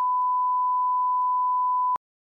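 A steady electronic beep: one pure, unwavering tone held without a break, which cuts off suddenly near the end.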